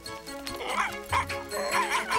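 A cartoon beagle puppy giving several short yipping barks over light background music.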